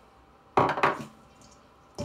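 A quick clatter of kitchenware, a cluster of sharp knocks about half a second in and one more short knock at the end, as sliced scallions are added to the salad bowl.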